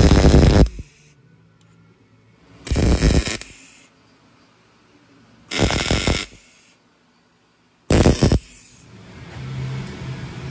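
MIG welder laying four short tack welds, each a crackling sizzle of under a second, about two to three seconds apart, fixing a steel engine-mount bracket in place.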